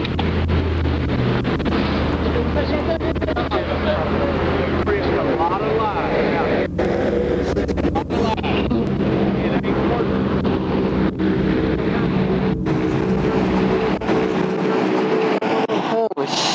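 Vehicle engines idling at a standstill, a steady low hum with broadband noise over it and faint voices in the background.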